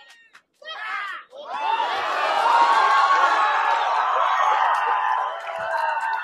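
Fight crowd screaming and cheering at a knockout, a dense mass of many voices that breaks out about a second and a half in and stays loud, after a short single shout.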